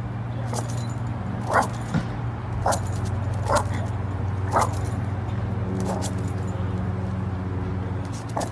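Dogs barking at each other through a fence: about six sharp barks roughly a second apart, over a steady low hum.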